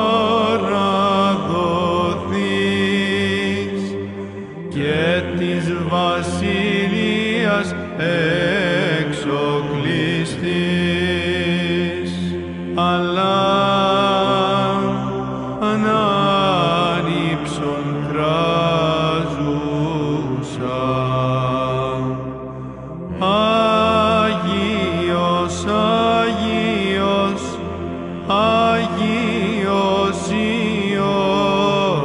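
Greek Orthodox Byzantine chant: a voice sings long, winding melismatic phrases over a steady held low note. The singing breaks off briefly about four seconds in and again around twenty-two seconds.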